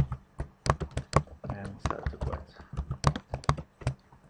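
Typing on a computer keyboard: a quick run of keystrokes in short clusters with brief pauses, as a line of code is entered.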